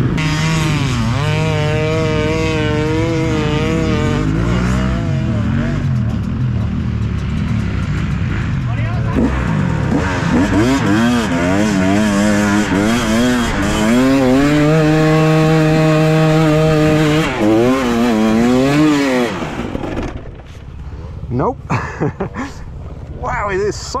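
Single-cylinder two-stroke engine of a 2017 KTM 250 EXC dirt bike revving up and down again and again, then held at high revs under load on a steep sand hill-climb. The engine cuts out about twenty seconds in as the bike goes down on the slope, leaving a few short irregular sounds.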